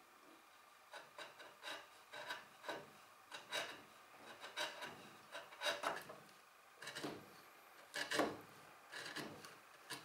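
Hand-pushed bench chisel paring wood inside a cross-shaped mortise. It makes a run of short, faint scraping slices, about two a second, beginning about a second in.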